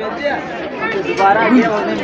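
People talking, their words indistinct: shop chatter.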